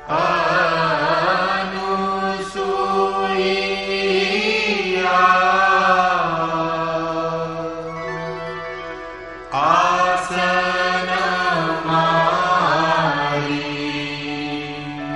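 A solo voice chanting a Sanskrit verse in long, slowly gliding melodic phrases over a steady drone. There are two phrases, the second starting about two-thirds of the way in.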